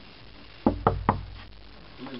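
Three quick knocks on a door, about a fifth of a second apart, a little over half a second in.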